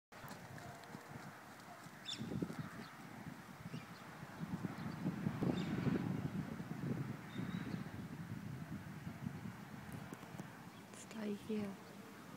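Muffled hoofbeats of a pony trotting on a sand arena, growing louder as it passes nearer the microphone, with a person saying "here" near the end.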